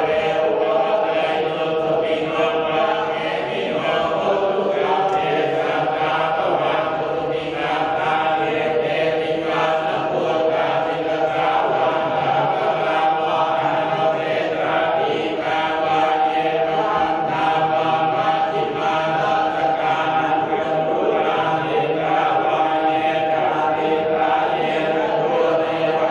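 Thai Buddhist monks chanting together in unison, a continuous recitation held on a near-level pitch without pause.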